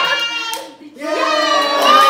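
A lively song with singing, with hands clapping along. It breaks off briefly a little under a second in, then picks up again.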